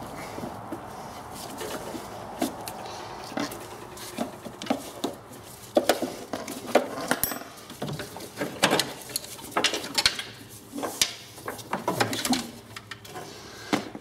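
Hoses, wires and small metal fittings being pulled and handled in a VW Beetle engine bay: irregular clicks, knocks and light clinks, several a second, loudest around the middle.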